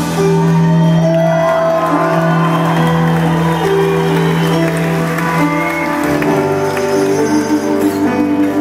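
Rock band playing an instrumental passage live in a large hall: a low chord held under a wind-instrument melody, changing about six seconds in, with some whoops and cheers from the crowd.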